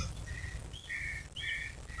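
A bird calling faintly outdoors: three short chirps spaced about half a second apart.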